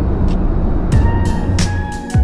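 Porsche 911 Dakar's twin-turbo flat-six, with the sports exhaust on, heard from inside the cabin while driving. About a second in, music comes in with drum hits and held notes and takes over.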